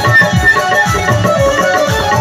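Instrumental live stage music played loud through the PA: a pitched melody line over a steady beat of deep drum strokes, with no singing.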